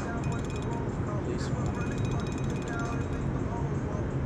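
Fishing reel's drag giving out line in rapid ticks as a hooked catfish pulls against it, over a steady low rumble.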